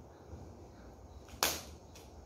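Packing tape on a cardboard box being cut free: one short, sharp snap about one and a half seconds in, over faint room noise.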